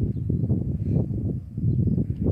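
Wind buffeting the microphone: an irregular, fluttering low rumble.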